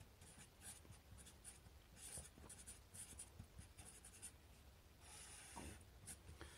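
Sharpie fine-point marker writing by hand, a faint run of short scratchy pen strokes with a longer steady stroke near the end.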